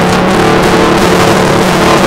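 Acoustic guitar strummed hard and continuously, recorded so loud that it distorts into a dense, steady wash.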